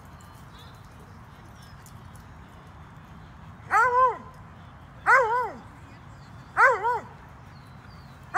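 A dog giving three loud, yelping barks about a second and a half apart, each a short cry that rises and falls in pitch, typical of a dog baying at a squirrel it has chased up a tree.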